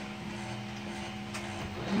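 Glass-bottom tour boat's motor running with a steady low hum as the boat moves slowly. A single faint click a little past halfway.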